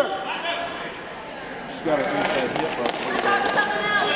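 Shouted coaching, "Get her," then several voices calling out at once from about two seconds in, with a few short sharp knocks around the same time.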